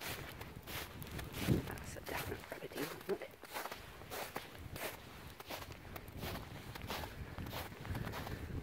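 Footsteps of boots walking through thin snow, a steady series of short crunches at a walking pace.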